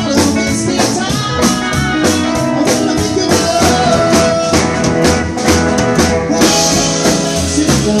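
Live rockabilly band playing: electric guitars over upright bass and drum kit, with a steady beat.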